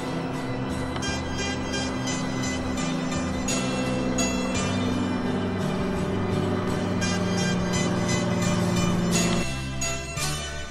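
Small single-engine propeller plane droning steadily overhead, with a steady low engine tone, under background music; the drone cuts off abruptly near the end.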